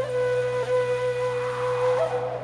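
Instrumental passage of an ilahi: a flute holds one long steady note over a low sustained drone.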